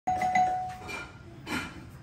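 Front doorbell chime ringing, a clear bell tone that starts suddenly and fades within about a second.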